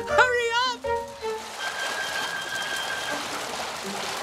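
Cartoon water-spray effect from a garden hose: a steady hiss lasting about two seconds. Before it, a character gives a short cry about a second long.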